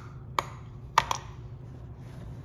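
Small metal tin of solid toothpaste knocking on a hard countertop: a light tap, then two sharper clicks close together about a second in.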